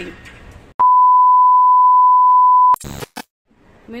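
A loud, steady electronic beep at one pitch, lasting about two seconds and cutting off sharply, followed by a brief burst of noise with a few clicks.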